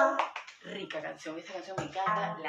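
Dance music stops abruptly just after the start. A woman's voice then speaks quietly in short phrases, with a couple of sharp clicks.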